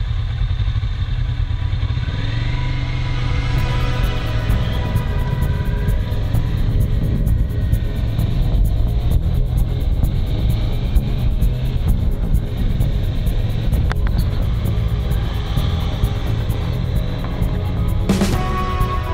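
Motorcycle engine running steadily while riding along, with wind and road noise heavy on the bike-mounted camera's microphone.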